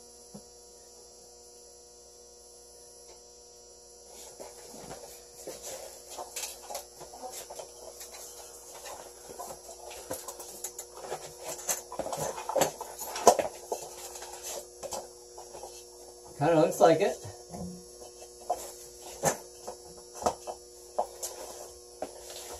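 A steady electrical hum, with rustling, brushing and knocking on the camera microphone from about four seconds in as a shirt rubs against it. A short voice-like murmur comes about two-thirds of the way through.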